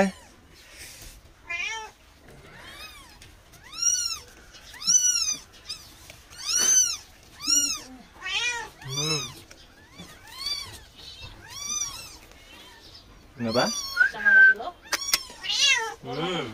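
Newborn kittens mewing: thin, high-pitched calls that rise and fall, repeated about once a second. Near the end comes a louder, lower call that rises in pitch.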